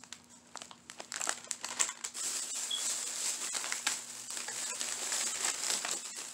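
A clear plastic bag of decorative moss crinkling and crackling as it is handled. The crackles are sparse at first and become dense about two seconds in.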